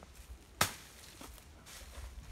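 A single sharp chop of a machete blade a little over half a second in, followed by a few faint knocks.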